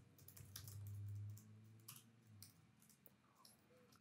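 Faint, scattered clicks of a computer keyboard being typed on, with a faint low hum lasting about a second near the start.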